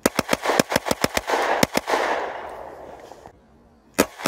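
Glock 29 10mm pistol bump fired: a rapid string of about a dozen shots in under two seconds, with the echo dying away over the following second and a half.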